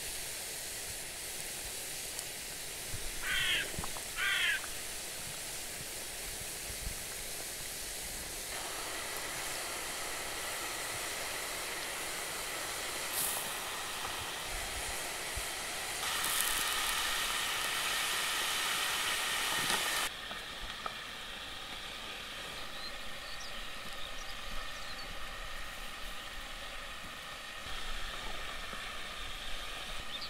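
Steady hissing sizzle of lamb deep-frying in hot ghee over a wood fire, with two short sharp crackles a few seconds in. The hiss grows louder for a few seconds past the midpoint, then drops abruptly to a quieter outdoor background.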